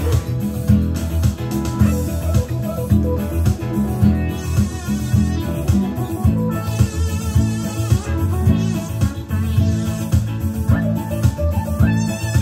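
Acoustic guitar strumming a steady rhythm, with an electronic keyboard playing along.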